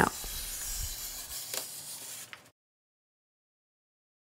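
Scissors cutting through pattern paper, a steady papery hiss that cuts off suddenly about two and a half seconds in.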